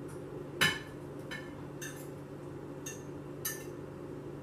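A utensil clinking and knocking against a steel pot and a plate as sliced sausage is put into a pot of rice: five or so separate strikes, the loudest about half a second in.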